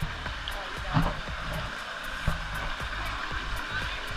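Water from a rock grotto waterfall splashing steadily into a swimming pool.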